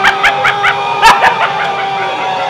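A person laughing in a quick run of short snickers through the first second, with one louder burst about a second in, over a steady sustained musical tone.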